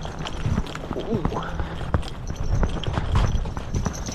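Footsteps on snow-covered lake ice, about two steps a second, as a person walks across the ice.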